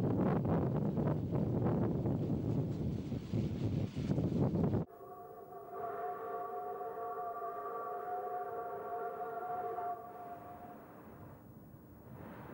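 Loud, steady rumble of a train running, heard from inside the carriages, cut off suddenly about five seconds in. Then a Mikado steam locomotive's whistle sounds one long blast of several steady tones together for about five seconds before fading.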